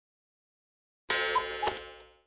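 Silence, then about a second in a bright chime sound effect: two struck notes, the second lower, like a ding-dong, ringing and fading out.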